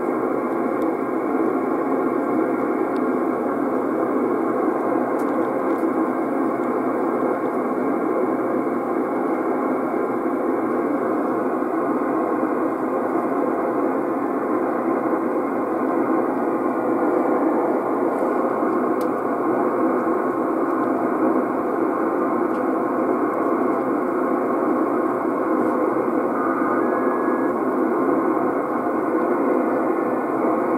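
Steady band-noise hiss from a Yaesu FT-450D HF transceiver's speaker in USB mode while the VFO is tuned up through the 11 m band. No station comes through, only a brief faint whistle near the end.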